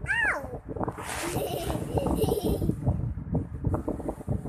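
Small plastic toy figures being handled and knocked together, with a short, high, meow-like squeal that rises and falls right at the start and a brief hiss about a second in.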